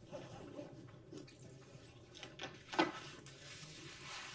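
Faint room noise picked up by an open microphone: scattered small clicks and rustles, with one sharper click or knock about three seconds in.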